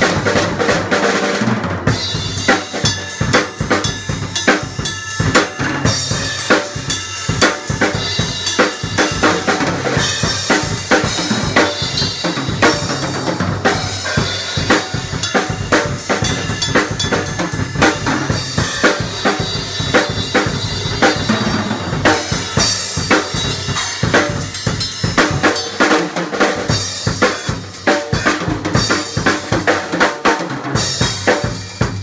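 Acoustic drum kit played freely without a break: fast strokes on bass drum, snare and toms, with cymbal crashes coming in every few seconds.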